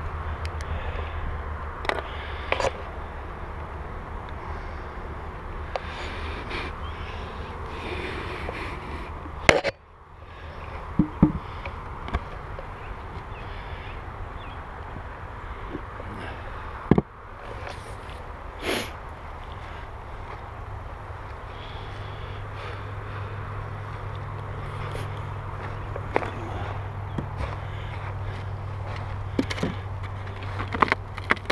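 Wooden beehive boxes and frames being handled: scattered knocks and scrapes of wood on wood, with a few sharper knocks about a third of the way in and again past the halfway point, over a steady low hum.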